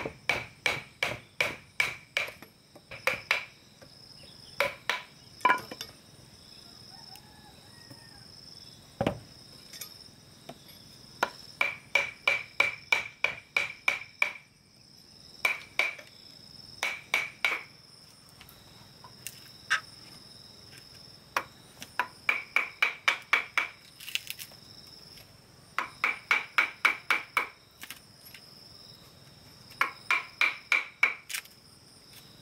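Hammer striking a steel chisel cut into a thick wooden slab: quick runs of blows, about three to four a second, each with a metallic ring, broken by short pauses. Insects shrill steadily in the background.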